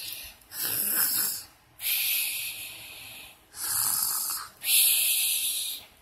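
A child making pretend snoring sounds with her mouth: four long, hissing breaths in a slow in-and-out rhythm.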